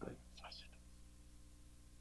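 Near silence: room tone with a faint steady hum, after the last word of a man's sentence at the very start.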